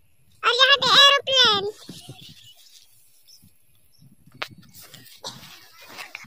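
A high-pitched voice gives three short wordless calls with gliding pitch in the first second and a half. Faint rustling follows, with one sharp click about four and a half seconds in.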